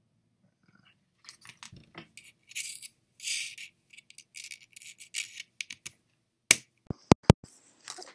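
Scratchy rustling from a handled earphone-headset cable and microphone, in short irregular bursts, followed near the end by four or five sharp clicks.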